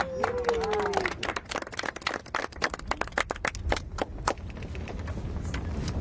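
A small group clapping: sharp, uneven claps that thin out after about four seconds. A voice calls out in the first second.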